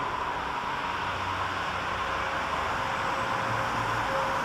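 Steady hum and hiss of subway station noise, with a faint steady tone coming in about halfway through.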